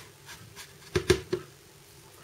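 A plastic food container handled on a stone countertop: three quick light knocks about a second in.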